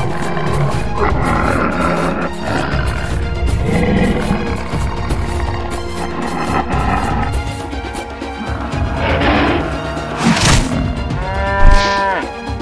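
Background music for an animated cartoon, with animal sound effects laid over it near the end: rough, noisy roar-like bursts about nine seconds in, then a loud pitched animal call that falls slightly just before the end.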